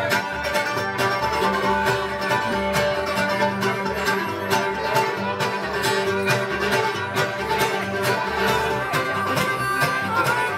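A live bluegrass string band playing a tune with a steady beat: fiddle carrying held notes over strummed acoustic guitar and picked banjo, with an upright bass plucking the low notes.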